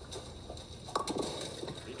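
A bowling ball hitting the pins about a second in, followed by a short clatter of pins falling as a two-pin spare is picked up. It is heard through a TV's speaker.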